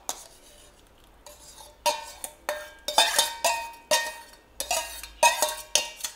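Metal spoon clinking and scraping against stainless-steel bowls: a quick series of ringing clinks, about two or three a second, beginning about two seconds in.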